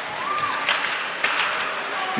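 Steady ice-arena crowd noise with a few faint taps.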